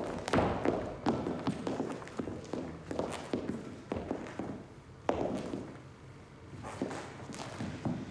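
Ballet pointe shoes knocking and brushing on a studio floor as dancers step, turn and land from a jump: irregular footfalls, with sharper strikes about a second in, three seconds in and five seconds in.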